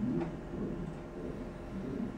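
Room tone in a small room: a steady low hum, with a faint murmured voice near the start.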